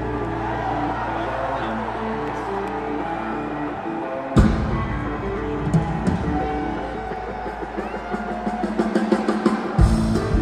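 Live rock band playing with drum kit and bass: a low held bass note breaks off just before the fourth second, a sharp drum hit lands about half a second later, and the band comes back in with drum strokes growing busier near the end.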